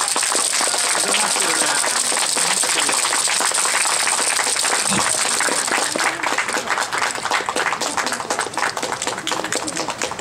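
Audience applauding just as the dance music stops, the clapping thinning out into more separate claps in the second half.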